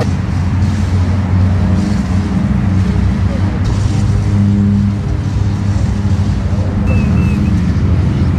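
Steady low mechanical rumble with an engine-like hum, unbroken throughout, with a few short high chirps near the end.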